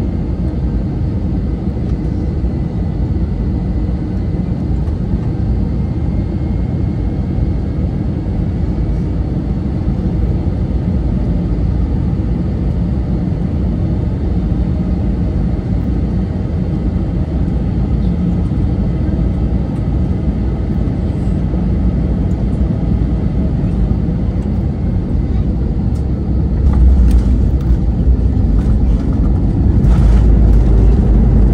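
Airbus A321neo cabin noise on final approach: a steady low rumble of engines and airflow with a faint high engine whine. About 27 s in, the jet touches down: a burst of rattles and a heavier, louder rumble as the wheels roll on the runway.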